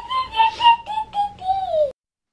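A toddler's high-pitched squealing in play: a run of short squeals, then one longer squeal that falls in pitch and cuts off suddenly.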